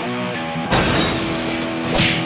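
Background music with a glass-shattering sound effect that starts suddenly less than a second in and fades out over about the next second.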